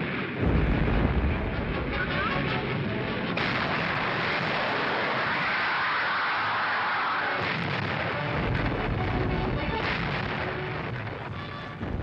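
Old newsreel soundtrack of heavy naval gunfire and shell bursts, a continuous rumbling din. It is deepest in the first few seconds and again in the last few, with a hissier stretch between.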